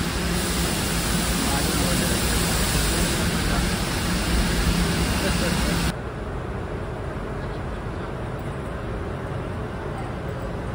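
Proceco industrial hot-water parts washer running, a steady rushing noise with a low hum from the steaming wash tank. It cuts off suddenly about six seconds in, giving way to quieter, steady engine-shop background noise.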